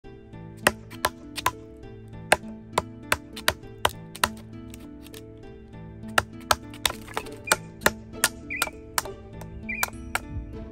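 Wooden mallet batoning a knife through a piece of wood: sharp knocks two or three a second, pausing for about a second and a half midway, over background music.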